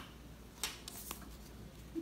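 Faint rustling of a fabric strip and a cloth tape measure being handled on a tabletop, with a couple of soft ticks.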